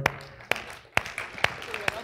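Light, scattered hand clapping in a hall: about half a dozen separate claps, roughly two a second.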